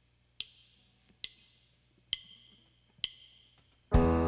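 A drummer counting in with her drumsticks: four sharp wooden clicks of stick on stick, evenly spaced a little under a second apart, each with a short ring. On the count the full band comes in loudly just before the end.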